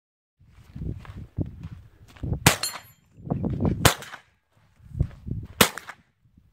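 Three rifle shots, each a sharp crack, about a second and a half apart; the first is followed by a brief ringing tail. A low rumble fills the gaps between shots.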